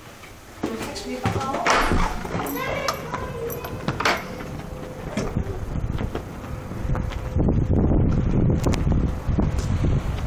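A heavy door opening, then strong wind buffeting the microphone from about seven seconds in.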